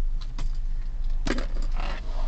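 Clinks, rattles and rustling as belongings are pulled out of a car's back seat, with a few sharp clicks among them over a low steady hum.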